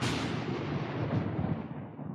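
An edited-in boom sound effect that hits all at once and dies away over about two seconds, its hiss fading as it goes: a stinger marking the start of a lightning-round segment.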